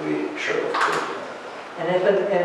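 Speech: voices talking in a meeting room.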